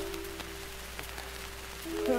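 Piano holding a single note that slowly fades between sung phrases, heard through the steady hiss and scattered crackle clicks of an old disc recording.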